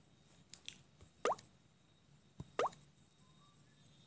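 Two short rising plop-like tones about a second and a half apart, each just after a faint tap: a tablet's touch-feedback sounds as on-screen buttons are tapped.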